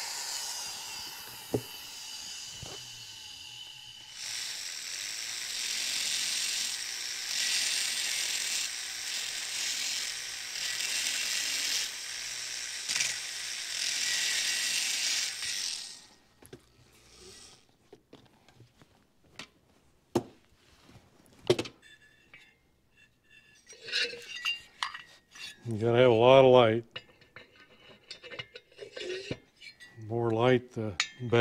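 High-speed rotary tool with a small bit grinding the port edges of an aluminium two-stroke motorcycle cylinder, a steady high whine that grows louder about four seconds in and cuts off suddenly about sixteen seconds in. Afterwards come scattered sharp clicks and metallic clinks as the cylinder and tool are handled.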